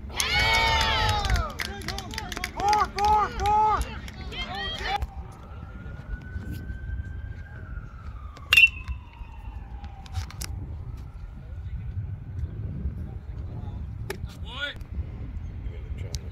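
Players shouting a rising-and-falling chant in the first few seconds, with no words made out. This is followed by a faint wail that slowly rises and then falls, like a distant siren, and a single sharp crack about eight and a half seconds in.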